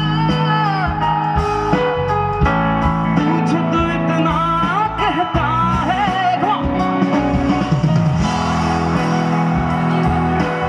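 Live rock band: a male singer over electric guitar, bass guitar and drums. The vocal line stops about seven seconds in while the guitar and band play on.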